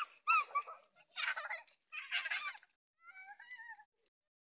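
A series of four short, high-pitched calls or cries, each under a second, with gaps between them. The last call is a cleaner, more drawn-out tone near the end.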